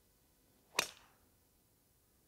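PING G430 MAX 10K driver striking a golf ball off the tee: one sharp, loud crack of impact a little under a second in, fading quickly.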